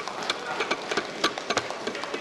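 Many hands thumping on desks in irregular, overlapping knocks, several a second: parliamentary desk-thumping, the customary applause in the Indian Parliament.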